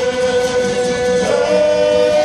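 Māori kapa haka group singing a waiata in unison, men's and women's voices together, holding a long note that moves to a new pitch just over a second in.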